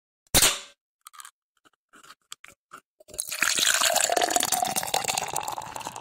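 A beer bottle opened with one sharp pop, followed by a few faint clicks. About three seconds in comes beer pouring and fizzing, with a steady stream of crackling bubbles.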